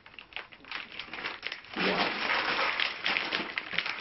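Groceries rustling and crinkling as a hand rummages in a shopping bag. A few light knocks of items being handled come first, then a continuous crinkling from about halfway through.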